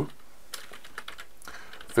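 Typing on a computer keyboard: a quick, quiet run of key clicks.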